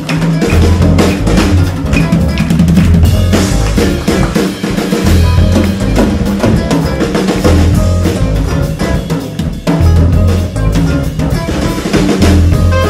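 Live band instrumental passage led by a busy drum kit: snare, rimshots and bass drum played densely over held low bass notes, with no singing.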